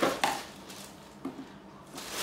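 Plastic toy packaging being handled and cut open with scissors: a sharp click at the start, another just after, then a faint knock past the first second.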